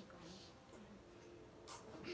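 Near silence in a small room, with a faint murmured voice and a short breath near the end.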